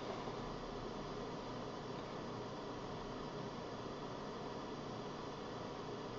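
Steady low hiss of room tone and microphone noise, with no sweep tone audible.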